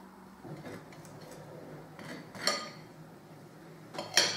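Table knife spreading on a slice of bread on a plate: faint scraping, with one short, sharper sound about two and a half seconds in as the knife meets the plate.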